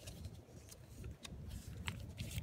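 Faint handling noise: a few light ticks as fingers touch a small brass key inside a hinged ring box, over a low steady rumble.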